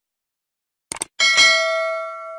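A quick pair of mouse clicks about a second in, then a bright bell ding that rings on and slowly fades: the sound effect of a YouTube subscribe button being clicked and its notification bell.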